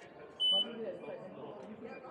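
Self-boarding e-gate giving one short high beep about half a second in, signalling the boarding pass has been read, over background chatter of people in the hall.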